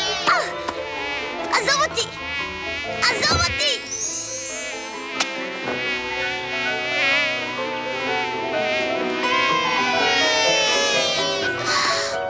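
Cartoon sound effect of a large bee buzzing as it flies around, its drone wavering in pitch, with several quick whooshes in the first few seconds.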